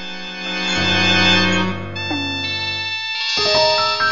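Computer-generated data sonification of a stacked area chart: several sustained synthesized instrument notes sound together, with a new set entering every second or so. The pitch of each note follows the height of the data, and each data category is voiced by a different instrument.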